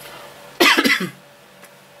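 A man coughing, a quick run of coughs about half a second in, from a scratchy throat.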